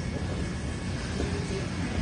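Steady low rumble of background vehicle noise, with a faint voice about a second in.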